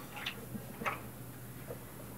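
A wooden apartment door being eased open: two or three faint clicks in the first second, over a low steady hum.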